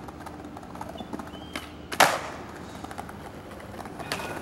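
Skateboard wheels rolling over stone paving, with a light clack about a second and a half in and then one sharp clack of the board hitting the ground about two seconds in.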